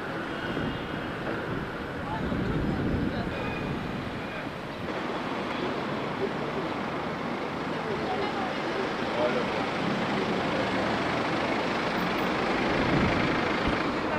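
Street traffic noise: cars idling and passing on a busy road, with faint indistinct voices.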